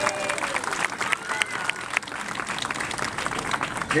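An outdoor audience applauding, with a few voices calling out over the clapping.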